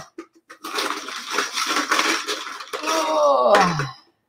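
A loud, dense clatter of hard numbered drawing chips being shaken and rattled in a container for a giveaway draw.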